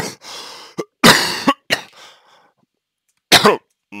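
A man coughing in a fit: one cough at the start, a stronger one about a second in and another just past three seconds, with breaths drawn in between.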